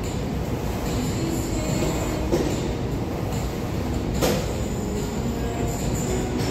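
Steady low rumble of room noise, with two short sharp knocks from the weight machine in use, about two seconds in and again about four seconds in.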